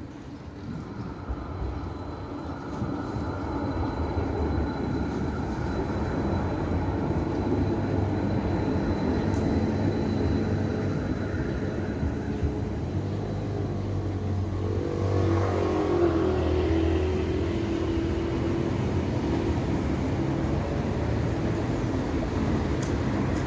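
Tram running at the stop beside the track: a steady electric hum and rumble that grows louder over the first few seconds, with a wavering higher whine a little past the middle.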